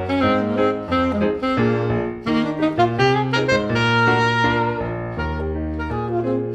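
Alto saxophone playing a melody over grand piano accompaniment, the notes changing steadily with low piano notes underneath.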